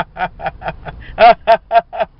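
A man laughing hard: a quick string of short "ha" bursts, the loudest coming in the second half.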